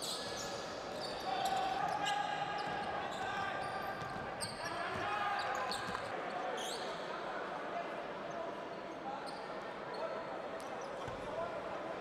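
Basketball court sound in a large arena hall: the ball bouncing on the court, indistinct voices from the crowd and players, and many short high squeaks in the first six seconds or so.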